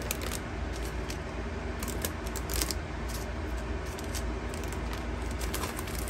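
Clear cellophane packaging bag crinkling, with small light clicks of acrylic and wood pieces, as the pieces are slid back into it. A steady low hum lies underneath.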